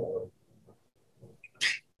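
A pause in a man's conversation: his sentence trails off in its last syllable, and near the end there is a short hissing breath just before the reply.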